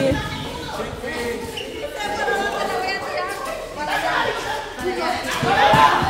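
Overlapping voices of several players and onlookers calling and chattering during a casual football game on a roofed court, growing louder near the end.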